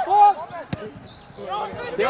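A single sharp thud of a football being kicked, about three-quarters of a second in, between shouts of encouragement from the sideline.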